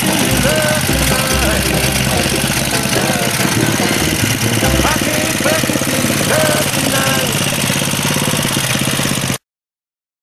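Small Briggs & Stratton lawn-mower engine running on a homemade off-road crawler go-kart as it crawls over rocks, with a person's voice over it. The sound cuts off suddenly near the end.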